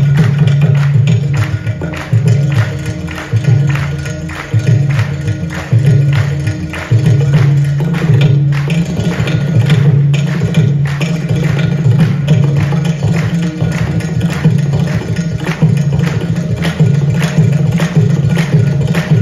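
Carnatic percussion ensemble of mridangam, ghatam and morsing playing a fast, dense rhythmic passage, a tani avartanam-style percussion solo, with rapid strokes throughout over a pulsing low twang, heard over a large PA system.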